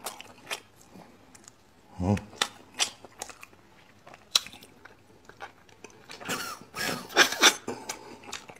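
Close-miked eating sounds of braised beef bone marrow: wet chewing, smacking and sucking with scattered sharp mouth clicks. The mouth sounds come thicker and louder about seven seconds in.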